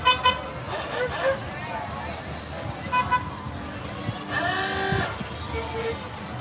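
Golf cart horns beeping in short toots: three quick beeps at the start and two more about three seconds in. A voice calls out near the end.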